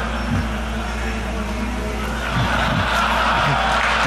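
Raspberry Pi-based quadcopter (the DangerDrone) humming steadily with its propellers as it hovers outside a window, heard from a played-back demo recording. Short bursts of laughter come through early on and again later, and audience noise builds toward the end.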